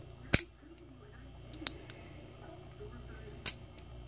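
Remington 870 trigger group handled bare in the hand: one sharp metallic click about a third of a second in as the hammer is cocked back onto the sear, then two fainter clicks of the parts being worked.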